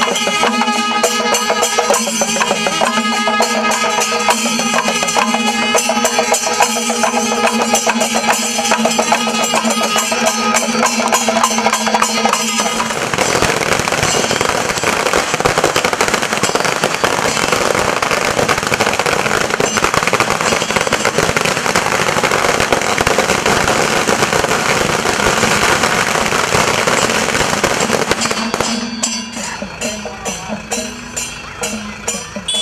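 Procession music with a steady drone and beating percussion. About thirteen seconds in, a long string of firecrackers takes over, crackling without a break for about fifteen seconds and burying the music, then stops near the end as the music comes back through.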